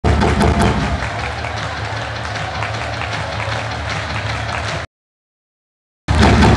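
Loud, bass-heavy electronic dance music played over a nightclub sound system, with a strong steady low bass, cutting off abruptly to silence about five seconds in.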